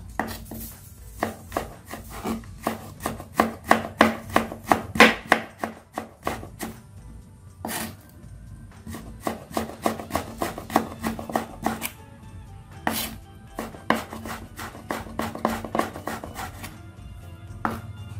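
Kitchen knife slicing fresh ginger into thin strips on a wooden cutting board: quick, even strokes, each a sharp tap of the blade on the board, several a second, broken by a few short pauses.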